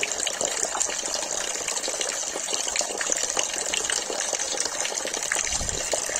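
Water pouring from a tipped plastic container into a pond: a steady splashing gush, full of small splashes and bubbling.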